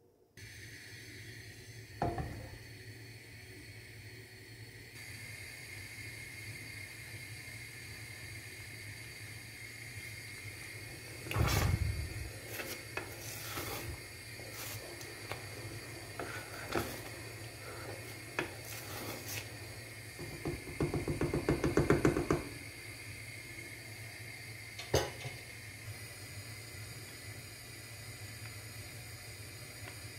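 A wooden spoon knocks and scrapes against a saucepan as thick plum jam is stirred while it cooks down into marmalade, with a quick run of rhythmic scraping strokes about two-thirds of the way through. A steady hum runs underneath.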